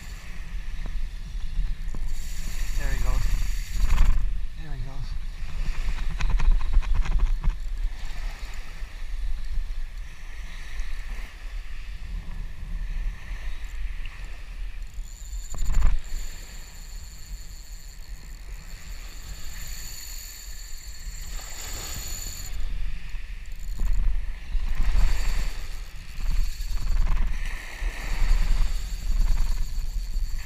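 Wind buffeting the microphone, a low rumble that swells and fades in gusts, over small waves washing up on the beach.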